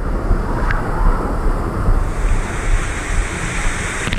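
Water rushing along a waterslide under a sliding rider, with heavy wind on the microphone: a loud, steady rush over a low rumble.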